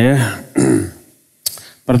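A man's voice: the end of a spoken word, then a brief throat-clearing sound and a pause, with one sharp click shortly before he speaks again.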